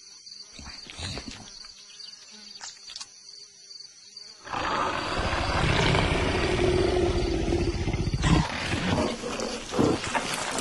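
A big cat's long, loud roar, voiced by an animated leopard, starts about halfway in and runs for a few seconds. Before it there is faint insect chirping.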